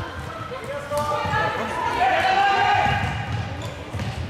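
Indoor floorball game: players' calls and shouts ringing in a large sports hall over low thuds of play on the court floor.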